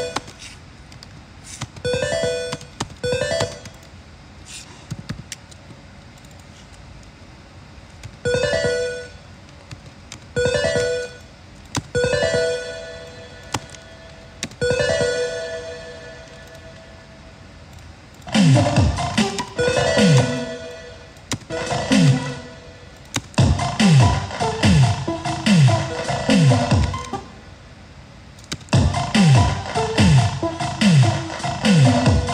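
Electronic music played on a synthesizer keyboard: short, separate synth notes at first, then, a little past halfway, a denser rhythmic pattern with chords and kick drums that drop sharply in pitch on each hit.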